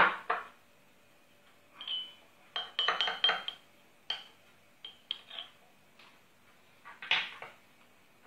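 Small glass cups clinking and a spoon tapping against glass as they are handled and set down on a table. There is a sharp knock at the start, a quick run of clinks with a brief ringing of glass about three seconds in, and a few lighter clinks later.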